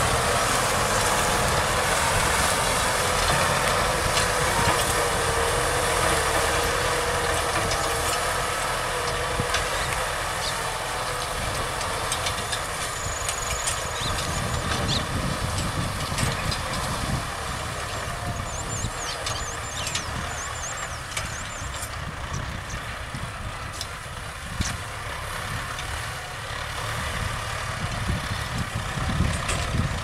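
Kubota M6040 tractors' diesel engines running under load while pulling seven-disc ploughs through dry, sandy soil. The engine noise is steady, eases a little past the middle and rises again near the end as a tractor comes closer.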